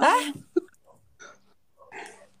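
A man's short, shrill vocal exclamation that rises steeply in pitch, followed by about a second and a half of near quiet with only faint small sounds.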